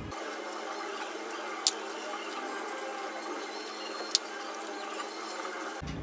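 Steady hiss of background room noise, broken by two short sharp clicks about two and a half seconds apart.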